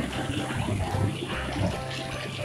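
Sauced, marinated chicken pieces sizzling on a hot flat pan over a gas flame, with steady background music.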